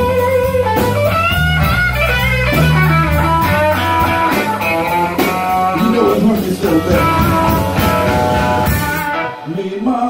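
Live blues band playing: electric guitar over a Fender electric bass and drum kit. Near the end the band stops for a moment, then the playing starts again.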